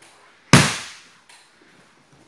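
A body landing a breakfall on the tatami mats from an aikido hip throw (koshinage): one loud slap-and-thud about half a second in that dies away over about half a second, followed by a smaller thump just over a second in.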